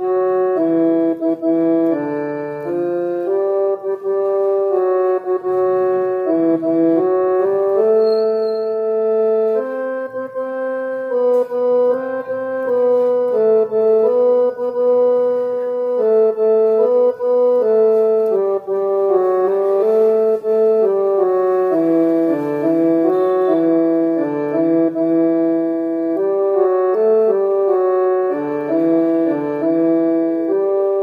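A keyboard instrument playing a slow melody in held notes that do not die away, moving step by step over a lower held note.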